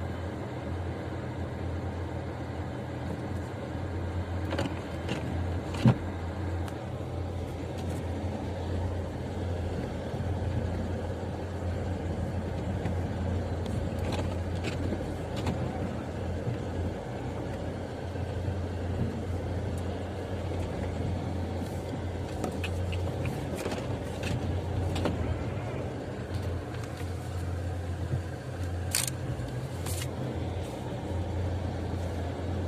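Car interior noise while driving slowly on snowy streets: a steady low hum of engine and tyres heard from inside the cabin, with a single sharp click about six seconds in.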